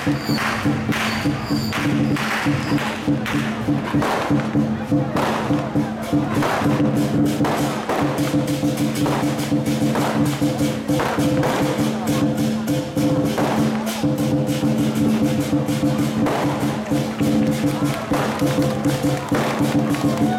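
Lion dance percussion ensemble (war drum with cymbals and gong) playing a fast continuous beat of strikes and crashes, over a steady low humming tone.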